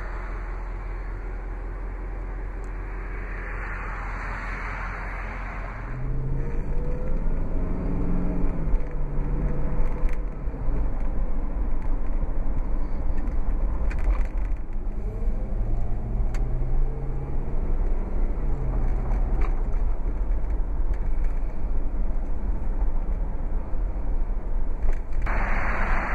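A steady low background for the first six seconds. Then the Jeep Grand Cherokee's 4.7-litre V8 is heard from inside the cabin while driving: the engine note rises twice as it accelerates, each time breaking off as the automatic shifts up, over a steady road rumble.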